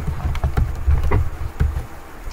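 A computer keyboard and mouse, with a scatter of short, sharp clicks about every quarter second, over a steady low hum.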